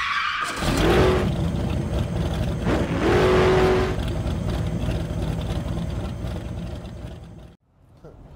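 Logo intro sound effect of a car engine revving: one rev climbs about a second in and a second about three seconds in, then the sound slowly fades and cuts off just before the end.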